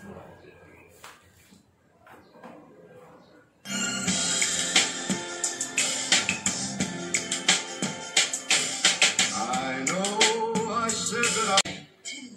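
Kiniso QS-400 Bluetooth speaker playing a song from a USB stick just plugged into it: a few faint clicks, then music with singing and sharp percussion starts suddenly about four seconds in, loud, and cuts off just before the end.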